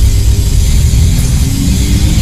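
Loud, heavily distorted logo audio in a G Major effects edit: a dense, bass-heavy wall of sound that comes in abruptly and holds steady.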